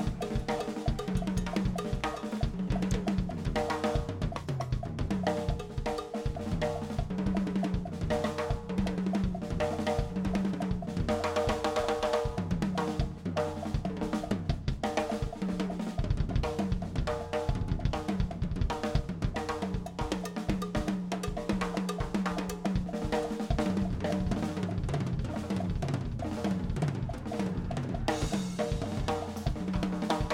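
Drum kit played fast and without a break: snare, bass drum and rimshots in a dense stream of strokes, with cymbals over them.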